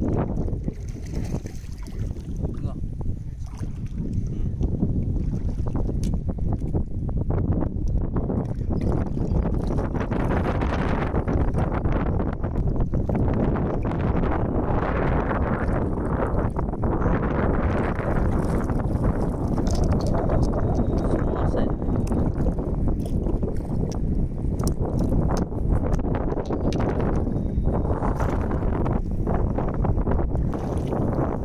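Wind buffeting the microphone with a steady low rumble, over water sloshing and swirling as hands dig through the sandy bottom of shallow water for clams; the water noise grows louder about a third of the way in.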